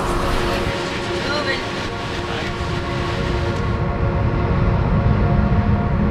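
KC-10 tanker's jet engines running as it taxis, a steady whine with rumble underneath. A little over halfway through, the high hiss drops away and a deeper, louder rumble builds.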